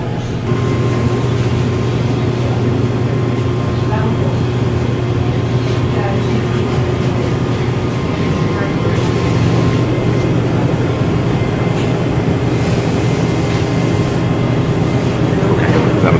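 A steady low mechanical hum with a faint high whine, under indistinct background voices.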